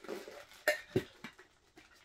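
Handling noise from metal Funko Soda collectible cans: a few sharp clicks and knocks, the clearest about two-thirds of a second and one second in, with light rustling between.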